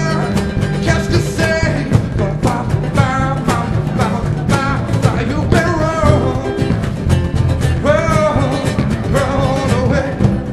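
Live acoustic band music: a man singing over a strummed acoustic-electric guitar, congas and upright bass.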